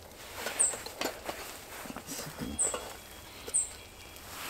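Metal spatula scraping and tapping on the grate of a small charcoal grill as a cooked pizza is worked loose and lifted off: a few light, scattered scrapes and clicks.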